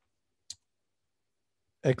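A single short click about half a second in, against near silence; a man's voice starts speaking near the end.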